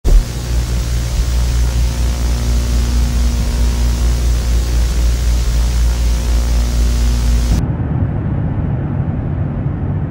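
Loud steady rushing noise over a deep hum. About seven and a half seconds in, the hiss drops away suddenly, leaving a duller low rumble.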